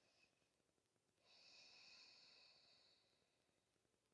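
A single faint, long breath through the nose or mouth, starting about a second in and fading out about two seconds later, from a person holding a seated stretch; otherwise near silence.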